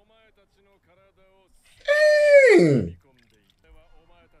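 A man's voice giving one long groan about two seconds in, sliding from high to low pitch over about a second, over faint anime dialogue.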